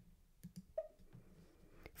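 A few faint clicks of a computer mouse, clicking a tab in the software.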